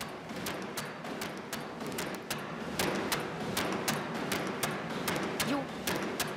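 Water-powered trip hammer (stångjärnshammare) striking iron in a steady rhythm, about three blows a second, over a steady rushing noise.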